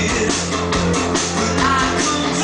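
Rock band playing live through a club PA: electric bass, guitar and a Ludwig drum kit with steady beats, recorded from among the audience.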